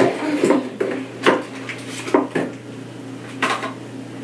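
Small hard objects clinking and clattering in a wooden vanity drawer as a toddler rummages through it: about half a dozen irregular knocks and clinks, the last near the end.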